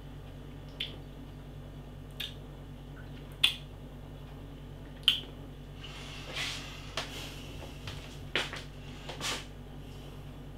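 Wet lip smacks and tongue clicks of someone tasting a mouthful of stout, single short smacks a second or more apart, with a breathy stretch about six seconds in and two more smacks near the end as the glass is raised again.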